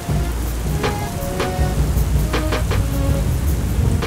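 Heavy rain and thunder, mixed with music.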